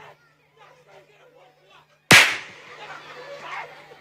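A single loud, sharp bang about two seconds in that dies away within half a second, among faint voices and a steady low hum.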